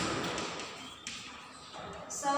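Chalk tapping and scratching on a blackboard as words are written, fairly quiet, with a sharper tap about a second in.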